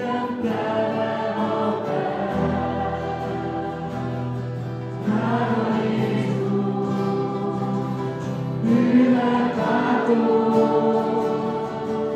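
Mixed group of young men and women singing a Hungarian worship song together, accompanied by several strummed acoustic guitars. A low bass line joins about two seconds in.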